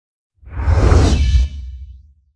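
TV channel logo ident sound effect: a whoosh over a deep rumble that swells in about half a second in, stays loud for about a second, then fades away.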